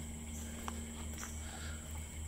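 Quiet background with a steady low hum and a faint steady high tone, and a few light clicks and rustles as the camera is carried across grass.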